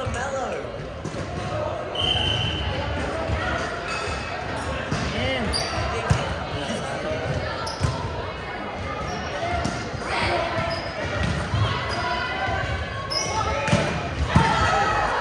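Indoor volleyball game in an echoing sports hall: overlapping voices of players and onlookers, with a few sharp knocks of the ball being struck.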